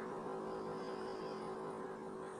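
A steady faint hum in the room's background tone, with no other event.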